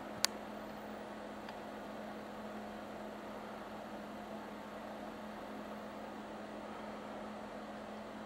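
A steady low hum with an even hiss, and one sharp click just after the start.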